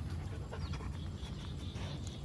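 A dog panting and sniffing in short breaths at a crab, over a steady low rumble.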